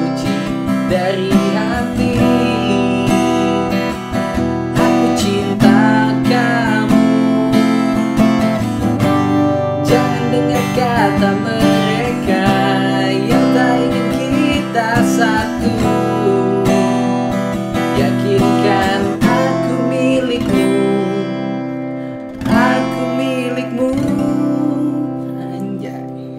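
Acoustic guitar strummed steadily through a chord progression, with a man singing along in places. Near the end the strumming thins to a last strummed chord that rings out and fades.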